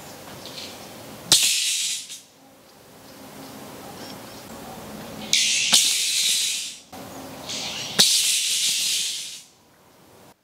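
Electric arc welding: three short crackling, hissing bursts, each struck with a sharp click and lasting about a second, as rebar for a pool floor is tack-welded together.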